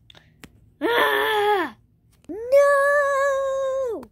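A child's voice giving two drawn-out, play-acted wailing cries: a shorter one that falls away at the end, then a longer one held on a steady pitch.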